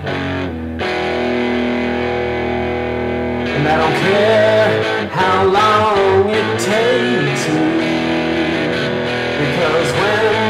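Blues guitar break with no singing: a held chord, then from about three and a half seconds in a lead line whose notes bend up and down in pitch.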